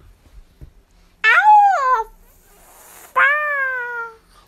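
Two loud drawn-out meow-like cries, about two seconds apart, each falling in pitch.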